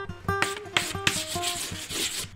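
Acoustic guitar background music, plucked notes, with a loud rough hiss laid over it from about half a second in.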